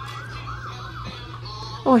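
Electronic siren from a small battery-powered toy fire truck: a quick rising-and-falling wail, about three cycles a second, that stops about a second and a half in.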